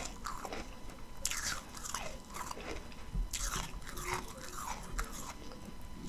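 Close-up chewing of powdery ice, crunching between the teeth in a run of gritty crunches every half second or so.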